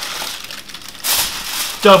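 Baking parchment and aluminium foil crinkling as they are folded around a food parcel, louder from about a second in.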